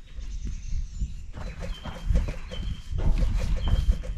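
A sheep bleating, over a low rumble.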